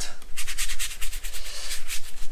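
Paintbrush scrubbed quickly back and forth on watercolour paper, a rapid run of scratchy strokes about ten a second that starts about half a second in.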